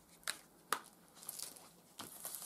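Plastic wrap on a cardboard box being torn off by its pull tab: two faint sharp crackles in the first second, then soft crinkling.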